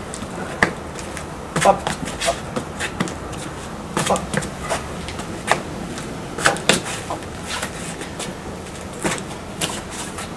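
Irregular short, sharp slaps and scuffs, a dozen or more, from two people drilling savate punches, kicks and parries: hands and forearms striking and blocking, and sports shoes shuffling on a stone patio.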